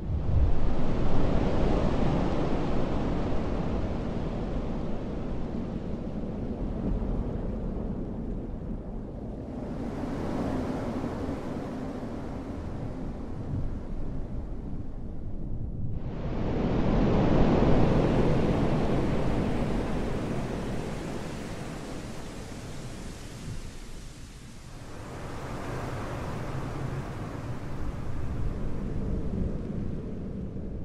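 Rushing surf and wind in a steady noisy wash that swells and fades. It changes abruptly about ten seconds in and again about sixteen seconds in, then rises again near the end.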